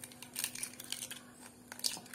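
Eggshell crackling as fingers pull a cracked hen's egg apart over a bowl: a scatter of small, light clicks and snaps, strongest about half a second in and again near the end.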